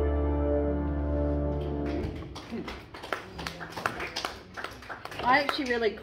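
Upright piano and electric bass guitar holding the last chord of a song, which stops about two seconds in. Then a few clicks and paper handling as the music book is lifted off the stand, and a woman's voice starts talking near the end.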